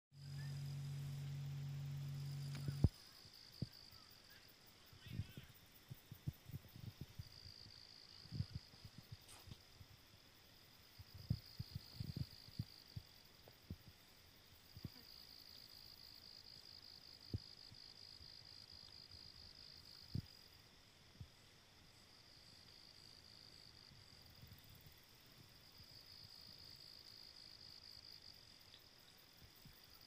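Crickets chirping in high trills that swell and fade in stretches of a few seconds. A low steady hum stops abruptly about three seconds in, and scattered soft knocks and thumps come through the middle.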